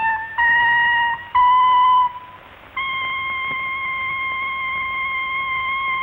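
Solo trumpet playing three short notes that step upward, then after a brief pause one long, steady high note held for about four seconds.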